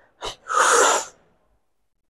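A weightlifter's forceful breaths out through the mouth with the effort of a dumbbell rep: a short puff about a quarter second in, then a longer hissing exhale of about two-thirds of a second.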